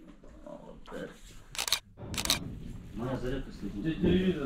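A man quietly murmuring a short prayer, with two brief rushes of noise about halfway through.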